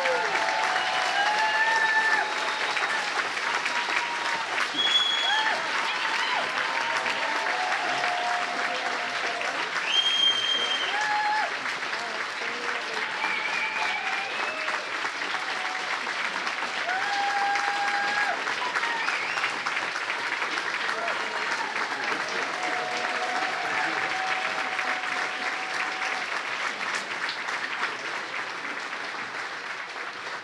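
An audience applauding for a long stretch, with scattered voices calling out and whooping over the clapping. It starts suddenly and tapers off slightly near the end.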